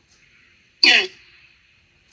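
A person clears their throat once, briefly, about a second in.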